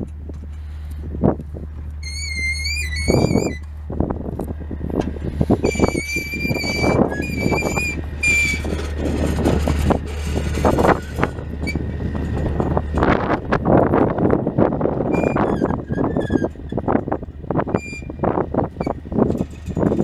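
An engine idling with a steady low hum that cuts off about two-thirds of the way through, under irregular knocks and crunching. Short whistled phrases come at intervals over it.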